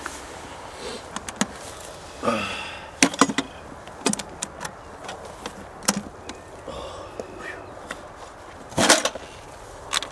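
A metal ammo can being handled and opened: scattered clicks and knocks of metal, with a louder double clack near the end as the latch and lid are worked open.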